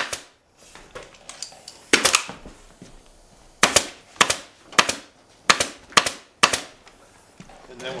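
Pneumatic staple gun firing about eight times, driving 3/8-inch staples through folded upholstery webbing into a wooden chair seat frame. The shots come about two a second in the second half.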